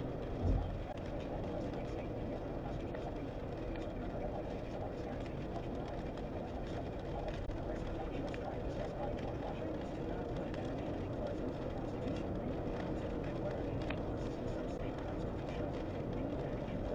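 Steady road and tyre noise of a car driving on a wet highway, heard from inside the cabin through a dashcam microphone, with a brief low thump about half a second in.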